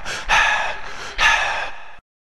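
Loud, breathy gasps close to the microphone, two or three about a second apart.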